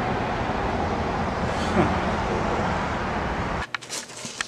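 Steady city street and traffic noise with a deep rumble, cutting off suddenly near the end.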